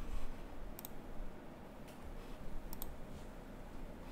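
A few sharp clicks of a computer mouse, some in quick pairs, over a faint low hum.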